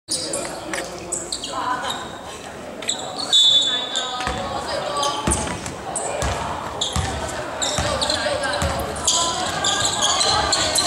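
A basketball being dribbled on a wooden gym floor, bouncing about once a second from a little before halfway on, with voices calling out around the court.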